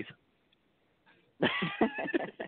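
A man laughing: after a short pause, a burst of laughter starts about one and a half seconds in as a run of short, breathy pulses.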